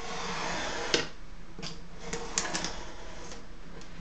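Utility knife blade drawn along a steel ruler, slicing through oak tag card on a cutting mat: a scratchy rasp for about the first second that ends in a sharp click, then several short clicks and taps.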